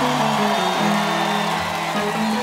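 Live band playing a song intro, with sustained low bass and keyboard notes that step from one pitch to the next, over crowd noise.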